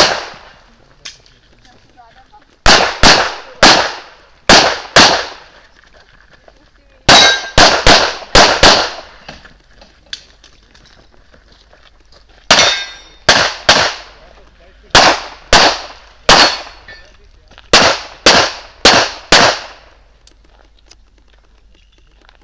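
Pistol shots fired in quick pairs and short strings, about two dozen in all, with pauses of one to three seconds between strings; the firing stops a couple of seconds before the end.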